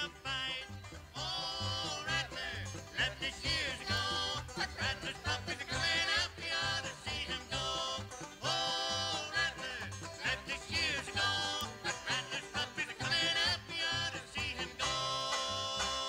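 Live country band music, a lively passage with no sung words over a regular bass beat, turning to a long held note near the end.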